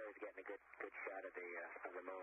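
A man narrating over the space-to-ground radio link, his voice thin and cut off at the top like a radio channel, with no break in the talk.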